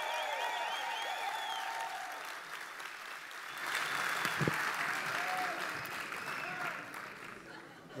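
Large crowd in a hall applauding, with cheering voices over the clapping at first; the applause swells again about four seconds in and then fades away near the end.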